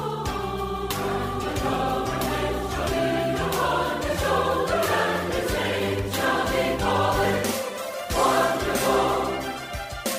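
Choral music: a choir singing over sustained low accompanying notes.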